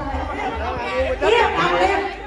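Several people talking over one another, with no sound other than voices standing out.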